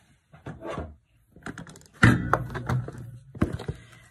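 Disposable diaper rustling and crinkling as it is handled and its front tape tabs are pulled open. A sudden louder burst of crackling with a thump comes about two seconds in.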